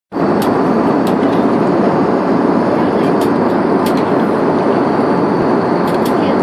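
Steady airliner cabin noise in flight, a dense, even rumble of engines and rushing air. A few light clicks of plastic cutlery against foil meal trays sound over it.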